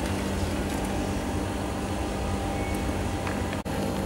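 Steady mechanical hum of running machinery, with a short break about three and a half seconds in.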